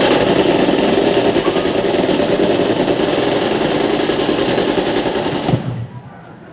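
Tommy gun fire, a stage sound effect: one long, unbroken, rapid rattle of about five and a half seconds that cuts off suddenly near the end.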